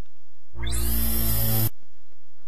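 An electronic computer chime, about a second long, opening with a quick upward sweep and then holding a bright chord before it cuts off. It is played by the computer as the program's setup wizard launches.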